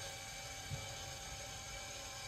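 Faint, steady whir of a motorized telescope mount slewing back to its home position, with one faint click partway through.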